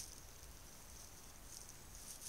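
Near silence: the trail camera's low hiss, with a few faint rustling ticks near the end from an animal moving close to the camera.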